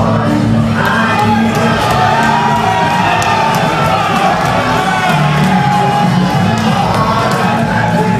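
Loud ring-walk music with a sung vocal, over a crowd cheering and shouting as a boxer makes his way to the ring.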